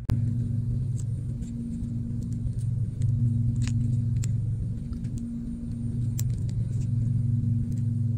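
A steady low hum that cuts in suddenly at the start, with a few faint small clicks of metal tweezers on phone parts over it.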